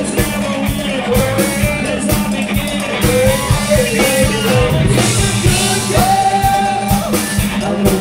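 A live rock band playing: a male singer over electric guitars and a drum kit keeping a steady beat.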